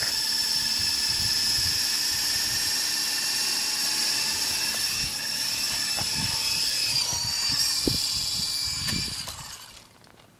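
Small electric motor and rotor blades of a Double Horse 9053 RC helicopter whining steadily as it hovers low. The pitch dips slightly near the end and then the whine dies away.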